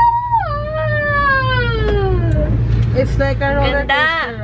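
A high human voice giving one long wordless wail that slides steadily down in pitch over about two seconds, followed by a few short vocal sounds and a quick rising-and-falling cry near the end, over a steady low hum.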